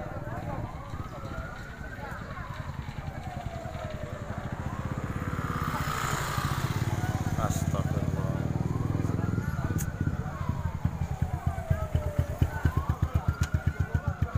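An emergency vehicle's siren wailing, its pitch slowly rising and falling in long sweeps. Under it, a low, rapidly pulsing engine grows louder in the second half.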